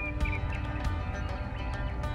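Background music with sustained notes.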